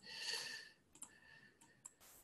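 A few faint computer mouse clicks, about three short ticks spread over the second half, after a soft hiss at the start.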